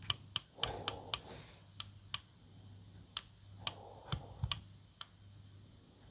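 Repeated irregular clicks of the small push button for the battery-capacity LEDs on a Parkside X20V lithium battery's circuit board, pressed about a dozen times with some handling noise between. The button is suspected of causing the LEDs to light only some of the time.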